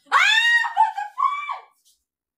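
A woman's high-pitched shriek of alarm: one long cry that rises sharply and is held, then a shorter second cry, stopping shortly before the end.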